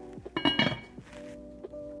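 Background music with steady held notes, and a metal pot lid clinking against the pot about half a second in.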